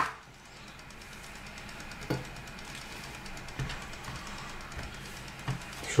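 Kitchen knife slicing an onion on a wooden cutting board, giving a few soft, irregular knocks against the board over a quiet background.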